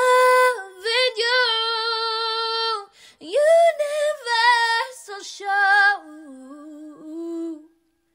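A woman singing unaccompanied, without instruments or beat: three wordless phrases of long held notes with vibrato, with short breaks about three seconds in and near the end.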